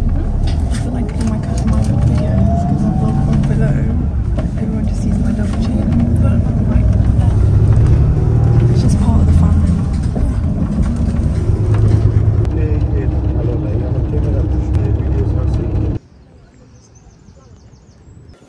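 Steady low rumble of road and engine noise inside the cabin of a moving coach, with faint voices over it. The rumble cuts off suddenly near the end, leaving only quiet background.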